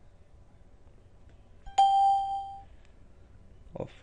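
A single electronic ding, an alert chime with a sharp start and a ringing fade of under a second, about two seconds in.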